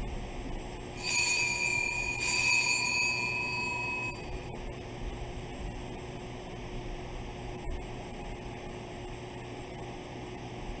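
Altar bell struck twice, a little over a second apart, each ring dying away over a couple of seconds. It is rung at the elevation of the chalice during the consecration.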